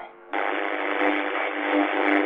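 Radio static: a steady, thin hiss with faint steady tones in it, cutting in suddenly about a third of a second in. It is the noise of a receiver between broadcasts.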